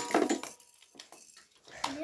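Clatter of Beyblade toy parts being handled beside a steel pan stadium: a short noisy rush that fades within the first half second, then a few faint clicks and taps.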